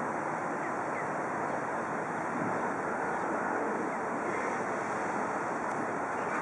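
A steady rushing noise that holds at one level throughout, with no distinct events standing out.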